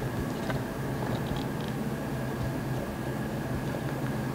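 A silicone spatula stirring thick cake batter in a plastic blender jar, with a few faint scrapes and taps against the jar, over a steady low hum.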